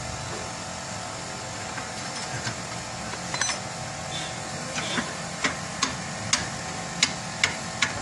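Scattered sharp metal clicks and clinks of a new ball joint being worked into its lower control arm bracket and adjusted, coming more often in the second half, over a steady hiss.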